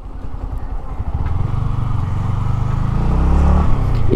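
Yamaha MT-15 V2's 155 cc single-cylinder engine running as the bike rolls slowly at low speed, its note gradually growing louder and a little higher, then dropping back just before the end.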